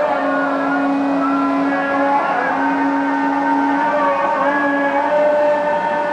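Islamic call to prayer (adhan) chanted over mosque loudspeakers: long held, slightly wavering notes, with more than one voice sounding at once at different pitches.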